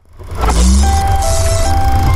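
Animated logo sound effect: a whoosh swells up from silence within half a second over a deep rumble and hiss, with a few short held musical tones on top, then holds loud and steady.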